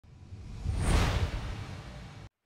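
A whoosh sound effect for a logo animation, with a low rumble under it. It swells to its loudest about a second in, then fades away.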